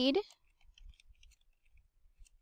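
Computer keyboard typing: a quick run of faint, light key clicks as a short phrase is typed.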